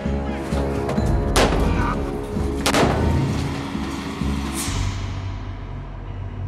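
Two sharp gunshots about a second and a half apart, then a fainter third, over a low held music drone.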